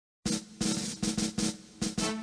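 Snare drum playing the opening strokes of an anthem's band introduction. After a brief silence come about six separate hits in an uneven rhythm.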